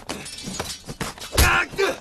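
Hand-to-hand combat sound effects from a war-drama melee: a sharp crashing hit about one and a half seconds in, followed at once by a man's short shout.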